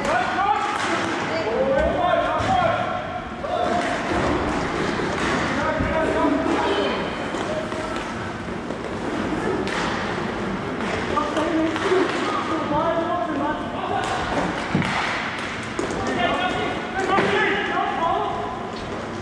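Indistinct voices calling out around a hockey rink, with scattered sharp knocks and thuds of sticks and puck against the boards.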